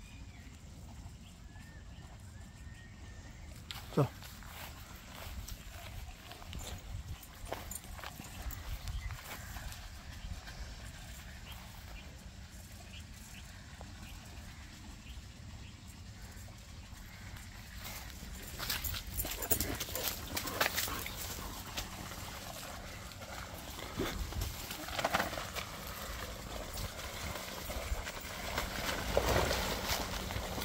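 Faint rustling and crackling of dry grass and leaves as a dog moves about, busier in the second half, with one sharp click about four seconds in.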